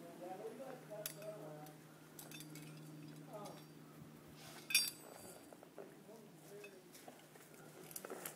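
Metal rope-rescue hardware (carabiners and rigging) clinking faintly a few times, with one sharper clink a little before the middle.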